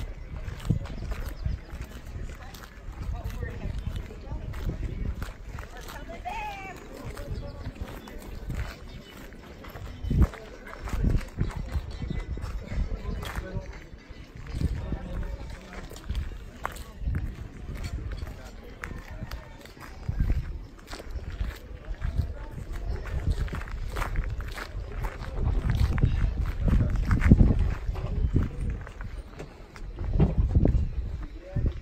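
Wind rumbling on a phone microphone, swelling and dropping and strongest near the end, with footsteps on gravel and indistinct voices of people around.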